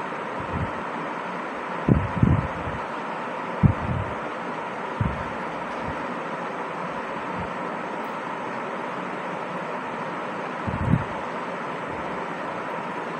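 Steady hiss of background noise with a faint steady tone. A few short, low, muffled thumps or puffs hit the microphone: a pair about two seconds in, one near four seconds, and another near the end.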